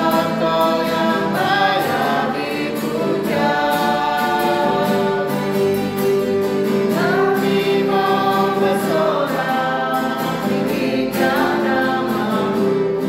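Indonesian Christian praise song: voices singing together over instrumental backing with a regular beat.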